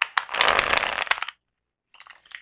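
A tarot deck being shuffled by hand: a rapid flutter of cards lasting about a second and a half, then a pause, with a second, lighter flurry starting near the end.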